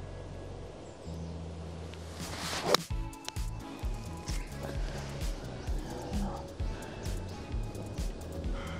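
A golf ball struck with a pitching wedge from the turf without a tee, about three seconds in: a short swelling swish of the downswing and then one sharp click of impact. Background music with a steady beat plays throughout.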